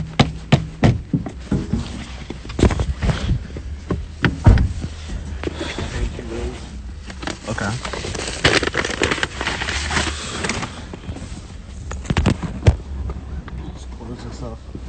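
Phone handling noise: clothing rubbing over the microphone, with a run of sharp knocks and crackles as the phone is moved about and covered.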